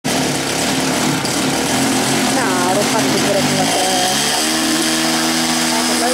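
A small model-aircraft engine running steadily. Its pitch rises a little before four seconds in and then holds at the higher speed.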